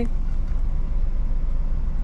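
Steady low rumble of a truck's engine running, heard inside the cab.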